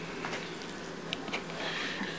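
A Condor Nessmuk knife slicing raw chicken on a bamboo cutting board: a few faint ticks as the blade meets the board, over low room hiss.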